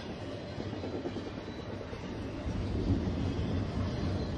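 Canadian Pacific double-stack container train's well cars rolling past: a steady rumble of steel wheels on the rails that grows deeper and louder about two and a half seconds in.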